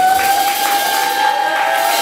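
A voice holds one long high note that rises slightly in pitch, over crowd noise, as a live song ends.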